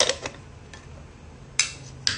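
Metal Vietnamese phin coffee filter and its lid clinking as they are handled and set down: a quick cluster of clicks at the start and one sharp clink just over a second and a half in.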